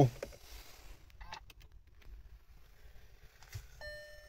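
Quiet car cabin with a few faint clicks, then near the end a short electronic chime, one steady tone, from the SEAT Ibiza's infotainment system.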